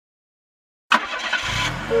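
Cartoon car sound effect: silence, then about a second in a car engine starts with a sharp burst and runs noisily, and near the end a two-tone car horn beep begins.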